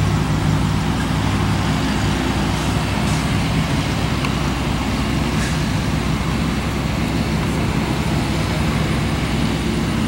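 A steady low engine hum over a constant noise, with no clear change.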